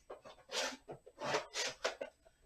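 A stack of trading cards being shuffled by hand: several short papery swishes in quick succession.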